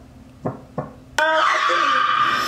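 Heartbeat sound effect: two soft double thumps about a second apart. About a second in, a sudden loud, sustained sound cuts in and carries on.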